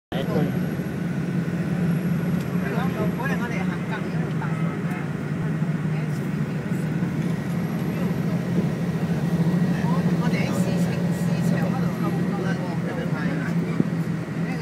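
Steady low drone of a moving road vehicle, engine and road noise heard from inside the cabin, with people's voices talking indistinctly in the background.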